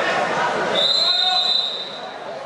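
A referee's whistle blown once on a wrestling mat: a steady, high-pitched blast of about a second, starting under a second in, over the chatter of the crowd.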